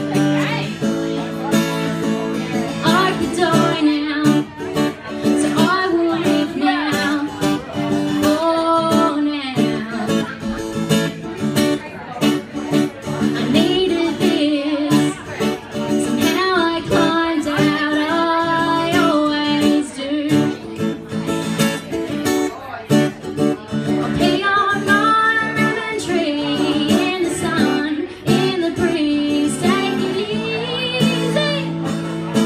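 Live performance of a woman singing while strumming an acoustic guitar, her voice carried through a vocal microphone.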